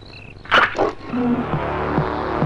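Film soundtrack: crickets chirp for the first half second. Two short, sudden noisy bursts follow. Then background music with a steady, regular beat comes in about a second in.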